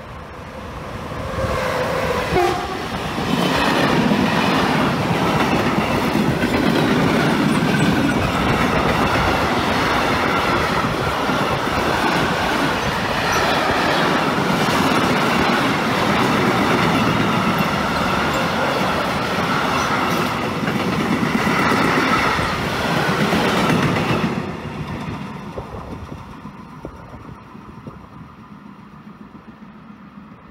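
Electric locomotive and a long freight train of covered wagons passing through a station. A brief horn note sounds about two seconds in as the locomotive arrives. Then comes about twenty seconds of steady wheel and wagon noise with clickety-clack, which drops off suddenly as the last wagon passes and fades away.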